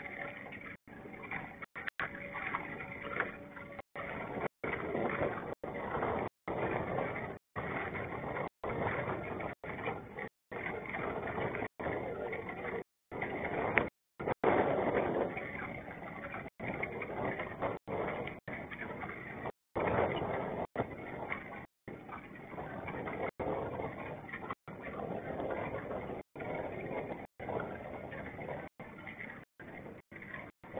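Muffled, fluctuating noise of a small boat under way on a lake, picked up by a low-quality camera microphone, with a faint steady tone in the first few seconds. The sound cuts out for a split second again and again throughout.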